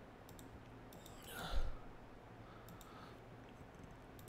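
Faint computer-mouse clicks, a few near the start and a few near the end, with one short, louder rustle about a second and a half in.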